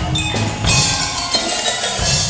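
Percussion ensemble playing: mallet percussion (bells, vibraphone, xylophone, marimba) over drum kit and bass guitar, in an arrangement of a metal song. A bright cymbal-like shimmer enters under a second in, and the deep bass drops out near the end.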